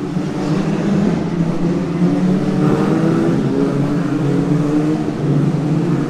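Race car engines on the nearby street circuit during the W Series women's support race, heard as a loud, continuous drone whose pitch wavers gently rather than sweeping past.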